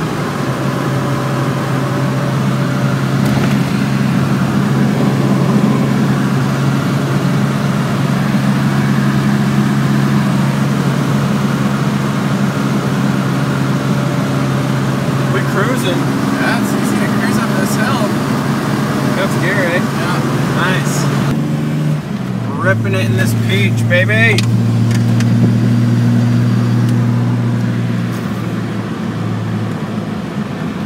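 Datsun 280ZX's fuel-injected L28E inline-six heard from inside the cabin, cruising with a steady drone. About two-thirds of the way through, the drone drops to a lower pitch and carries on steadily.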